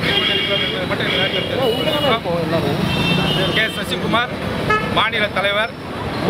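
A vehicle horn sounds more than once, with held steady high tones, over a man speaking. Road traffic runs underneath.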